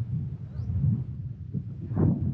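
Wind buffeting the microphone of a handheld camera, a rough low rumble that rises and falls, with a louder burst near the end.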